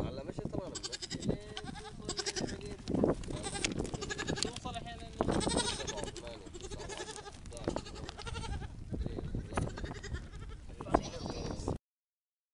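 A herd of goats bleating, many calls overlapping and wavering in pitch, with a sharp click near the end.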